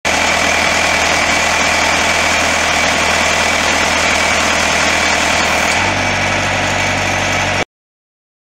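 Diesel engine of a tracked post driver, a 48 hp Yanmar, running steadily at idle. About six seconds in, its low note changes and grows stronger, and shortly before the end the sound cuts off abruptly.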